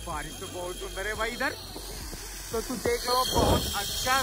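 Wind rushing hard over the microphone while a man shouts and calls out excitedly in short bursts. The rush grows louder in the second half.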